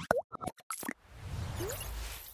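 Animated logo sound effects: a quick run of pops and short blips in the first second, one of them gliding up in pitch, then a whoosh with a low rumble swelling from about a second in.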